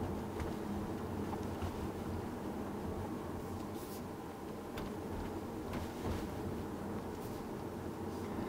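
Steady low road and tyre rumble inside the cabin of a 2017 Tesla Model S electric car rolling at about 30 km/h, with no engine sound. A few faint clicks sound over it.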